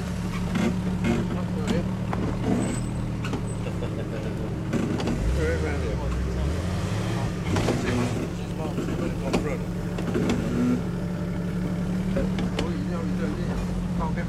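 Jeep Cherokee XJ engine running on an off-road trail, its revs rising for a couple of seconds about five seconds in, with scattered clicks and knocks.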